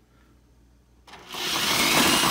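A power drill fitted to an old Craftsman drill press's table crank starts up about a second in and runs steadily, driving the crank that raises and lowers the drill press table.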